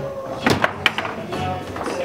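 Background music with a few sharp knocks from foosball play, the ball struck by the table's plastic figures, the loudest about half a second in.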